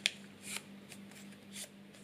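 A strip of paper being handled and folded by fingers into a paper helicopter, crackling and rustling: a sharp crackle at the start, then two short rustles about half a second and a second and a half in.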